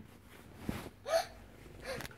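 Three short, quiet breathy voice sounds from a person, a gasp or hiccup-like catch of breath each time, spaced through the couple of seconds.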